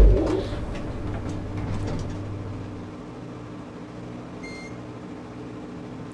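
Elevator doors shutting with a thud, then the steady low hum of the elevator car travelling up, with one short high beep about four and a half seconds in.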